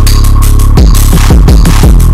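Loud electronic music: a deep, sustained bass under repeated booming kick-drum hits that drop in pitch, with hi-hat-like hiss on top and no vocals.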